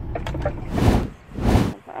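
Truck cab noise: a steady low engine and road rumble, with two loud bursts of rushing noise, each about half a second, in the middle. The rumble cuts off suddenly near the end.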